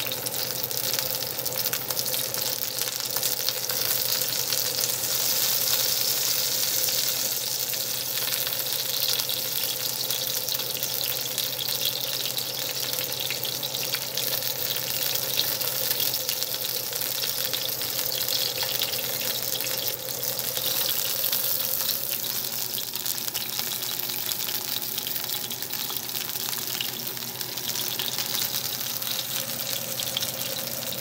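Ribeye steak sizzling in melted butter in a frying pan: a steady hiss as the butter is spooned over the meat to baste it.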